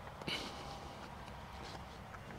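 Footsteps of someone walking outdoors, with one short, sharp scuff about a third of a second in.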